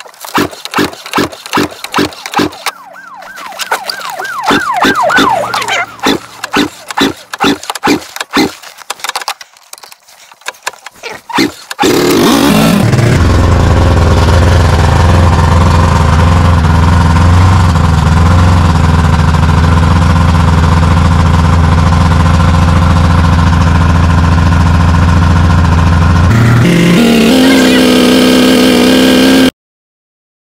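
Snowmobile engine being cranked in the cold: slow, even turning-over knocks, about two or three a second, with a brief sputter. About twelve seconds in an engine catches, its revs falling to a loud, steady idle that cuts off suddenly near the end.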